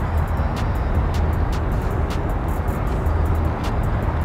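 Steady low outdoor city rumble, with light music underneath whose faint ticks come about twice a second.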